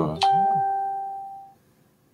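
A single ding: one clear chime tone that sounds suddenly and fades away over about a second and a half.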